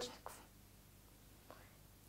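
Near silence: faint room tone in a pause between spoken phrases, with the tail of a word at the very start.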